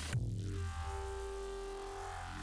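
Electronic dance music: a held synth chord over a steady deep bass, without vocals. The busier, brighter layer drops out right at the start.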